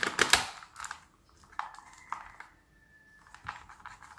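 Hard plastic clicks and knocks of a Xiaomi spray bottle being handled as its trigger head is fitted onto the bottle: a cluster of louder clicks at the start, then scattered light taps.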